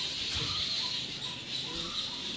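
Steady high-pitched insect buzzing in the background, with a soft low thump about half a second in.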